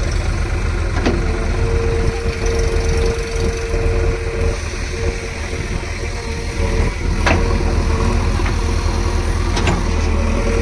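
Diesel engines of a tractor and a JCB 3DX backhoe loader running steadily while working in deep mud, with a held whine over the rumble. A few sharp knocks come about a second in and again near seven seconds.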